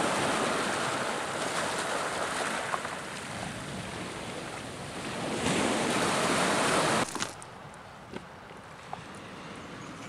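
Small sea waves breaking and washing up over a stony shingle shore, swelling louder near the end of the stretch. The surf cuts off suddenly after about seven seconds, giving way to a much fainter steady hiss.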